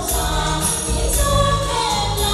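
A group of singers performing a song through microphones over backing music, with a steady beat and a high percussion sound repeating about twice a second.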